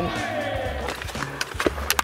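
Ice hockey practice sounds over background music: a voice trails off with falling pitch, then several sharp clacks of sticks and puck in the second half.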